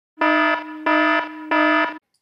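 Electronic alarm sound effect: three evenly spaced beeps of one buzzy pitch, about two-thirds of a second apart.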